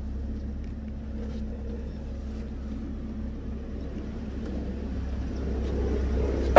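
Toyota Veloz idling: a steady low engine rumble with a faint hum above it, growing slowly louder.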